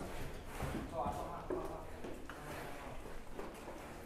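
Faint background voices talking, with a few soft knocks and a low background hum.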